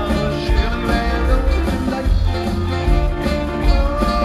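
Live rock 'n' roll band playing a danceable song, with a singing voice and piano over a steady bass beat.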